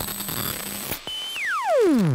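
TV-static style hiss with a faint steady hum for about a second, then a high steady tone that slides smoothly down in pitch into a deep rumble. It is a glitch or power-down sound effect over a 'Please Stand By' test card, and the falling tone is the loudest part.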